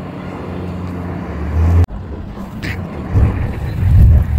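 BMW 318i (E46 3-Series) sedan's four-cylinder engine running as the car drives up and passes close by, a steady low engine note. It drops out suddenly for an instant just before the halfway point, then grows louder in surges near the end as the car comes past.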